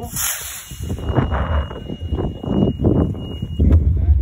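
A model rocket's A3 motor firing at liftoff: a brief hissing whoosh in the first half second. It is followed by wind buffeting and handling rumble on the phone's microphone as it tilts up to follow the rocket.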